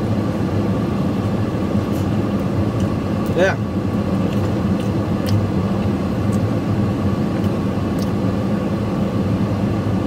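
Steady hum of a parked vehicle left running, its engine idling and the air conditioning blowing, heard from inside the cab, with a few faint clicks.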